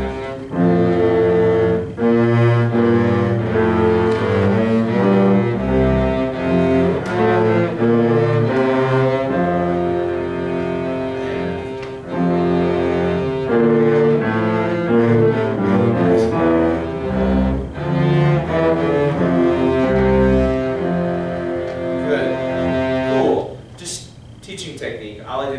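A small student ensemble led by cello plays the tenor and bass lines of a piece in slow, sustained notes that move about once a second. The music stops just before the end.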